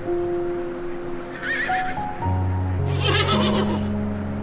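Horse whinnying over background music: a short wavering call about a second and a half in, then a longer, louder whinny from about three seconds in.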